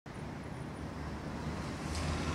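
Street traffic: a steady low rumble and hum of passing cars.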